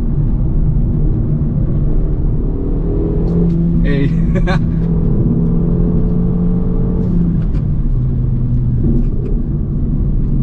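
Renault Mégane RS 280's turbocharged four-cylinder engine heard from inside the cabin at road speed, with a steady drone over constant road rumble. The engine note drops in pitch about seven and a half seconds in.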